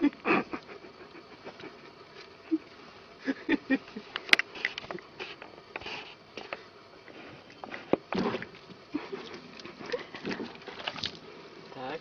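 Water splashing and slapping in a plastic bucket as a cat scoops at a fish with its paw, in short irregular bursts with a few sharp clicks.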